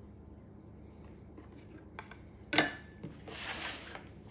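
A sharp clack with a brief metallic ring, as the metal icing spatula is put down, then a scraping rush of about half a second as the plastic cake plate is turned on the countertop.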